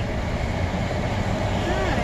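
Steady low hum in the cabin of a parked Ford Flex, with a brief faint voice near the end.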